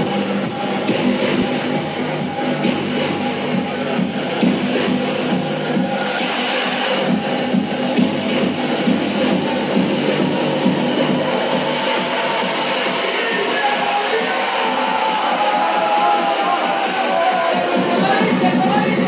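Electronic dance music from a breakbeat DJ set, loud and continuous, with a falling sweep in the later part.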